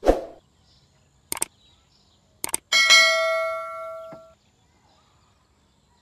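Subscribe-button animation sound effect: a swoosh, two sharp clicks, then a bell chime that rings out and fades over about a second and a half.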